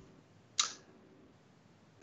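Near silence with a single short click about half a second in.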